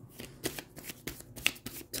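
A tarot deck being shuffled by hand: a run of irregular, crisp card snaps and slaps.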